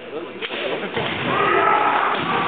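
A single sharp crack of a bamboo shinai striking kendo armour about half a second in, followed by long drawn-out kiai shouts from the fencers.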